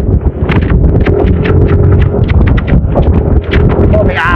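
Wind buffeting the microphone as a motorcycle rolls down a road, its running noise mixed with a rapid, uneven clatter and a faint steady whine.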